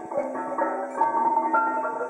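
Split-slate sound sculpture ringing as a stone ball rolls around its carved bowl: several pitched tones ring on and overlap, with a new note starting about every half second.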